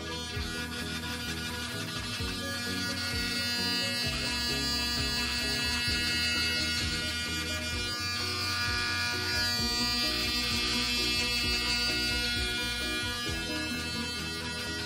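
Background music, with the steady buzz of corded electric hair clippers cutting hair underneath it.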